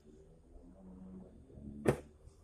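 Faint handling of an electrical cable and hand tools on a workbench, with one sharp click just before the end.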